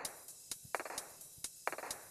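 A few sharp, light clicks and taps, spaced irregularly, as a 74HC595 IC and jumper wires are pressed and handled on a plastic solderless breadboard, with a small metal tool in hand.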